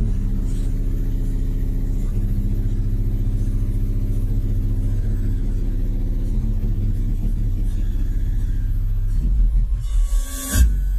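Heavy bass from a car audio system's subwoofers playing a bass track, heard inside the cabin: deep, sustained bass notes that change every few seconds, then drop lower and get louder about nine seconds in.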